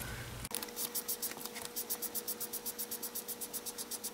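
Foam sponge ink dauber swiped across cardstock in quick, even strokes: a faint, regular scratching about seven times a second, starting about half a second in.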